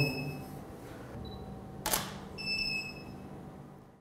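DSLR taking a shot: an electronic beep, then a single shutter click about two seconds in, followed by a second beep.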